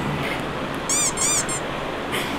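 Three short, high-pitched squeaks about a second in, typical of sneaker soles twisting on a boxing ring's canvas.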